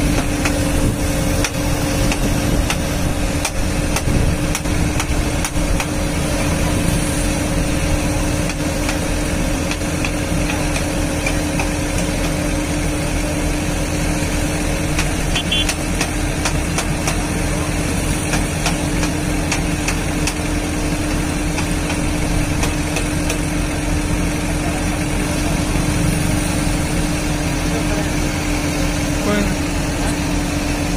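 Diesel engine of a JCB JS 215 LC tracked excavator running steadily at idle, an even drone with a constant hum in it.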